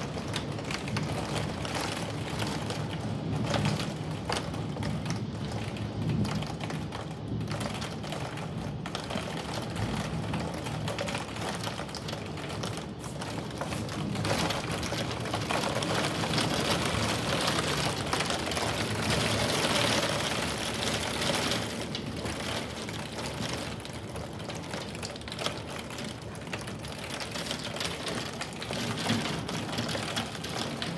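Heavy rain pattering hard against a window, a dense rapid ticking of drops, growing heavier for several seconds around the middle before easing a little.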